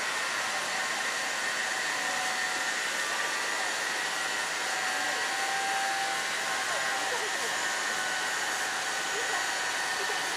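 Steady hiss of steam from the JNR Class C11 tank locomotive C11 227 while it stands on a turntable being slowly turned, with faint steady tones under the hiss.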